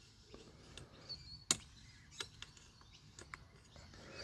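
Faint, scattered clicks of a loose saw chain's links as it is turned over in the hands, the sharpest about one and a half seconds in, with a faint bird chirp about a second in.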